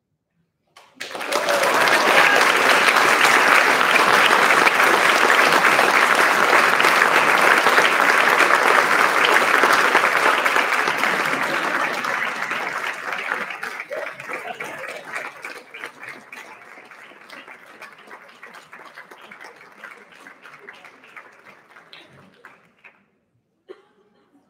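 Audience applause in an auditorium, starting abruptly about a second in, holding steady and full for around ten seconds, then thinning out into scattered claps that die away near the end.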